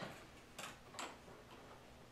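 Two faint short clicks about half a second apart, over near silence.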